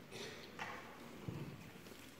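Hushed concert hall with no music playing: faint shuffles and scuffs near the start and a soft low knock a little past the middle.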